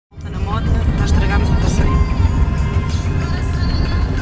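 A steady low rumble with indistinct voices over it.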